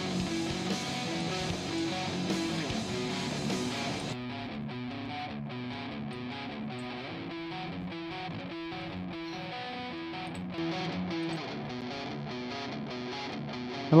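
Playback of recorded electric guitar tracks through amp-simulator presets modelled on Peavey and Bogner amps, playing a rhythmic riff of repeated notes. About four seconds in the sound turns duller, losing its top end.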